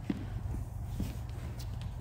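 A few light footsteps on the studio floor, three soft knocks over a low steady hum.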